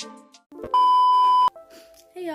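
A single electronic beep: one steady high tone held for under a second, cutting off abruptly, just after the background music fades out.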